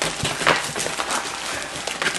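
Plastic-wrapped curtain packs rustling and crinkling as they are handled and pulled out of a cardboard box. The rustle runs on with a scatter of small clicks and knocks, the loudest about half a second in.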